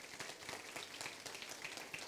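Congregation applauding: a steady, fairly quiet patter of many hands clapping.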